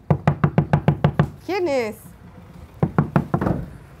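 Knocking on a door: a quick run of about eight knocks, then a few more knocks a second or so later.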